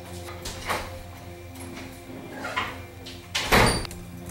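A door being opened and shut, with a few short noises and the loudest one about three and a half seconds in, over steady background music.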